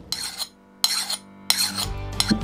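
A hand file scraped across a steel axe head three times, sharpening the axe's edge. Each stroke lasts under half a second, with a short gap between.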